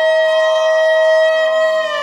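Violin holding one long, steady bowed note in a Carnatic alap of raga Vasanthi.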